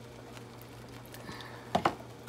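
Quiet kitchen with a steady low hum. Near the end, two quick sharp clicks as a plastic tub knocks against a frying pan while liquid is poured in to thin a thick cream sauce.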